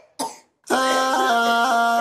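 A brief harsh vocal burst, then a man's voice begins singing a nasheed, holding one long note that steps up and down in pitch.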